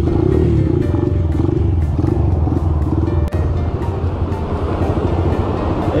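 Small four-stroke single-cylinder engine of an 88cc custom Honda Monkey running steadily under way, with a strong, even low rumble.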